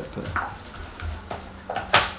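Small clicks of tattoo equipment being handled, ending in one sharp, loud click, as a gloved hand comes in with a paper towel to wipe the fresh tattoo.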